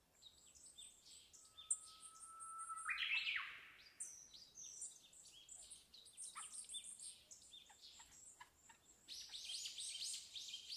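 Birds chirping and calling with many short, quick notes. About a second in, a steady whistle begins and climbs sharply at about three seconds; this is the loudest sound. The calls grow busier near the end.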